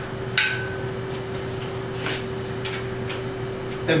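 Allen wrench clinking on the bolt and steel square-tube frame jig as the bottom-bracket bolt is loosened. A sharp metallic click with a brief ring comes about half a second in, then a few lighter ticks follow.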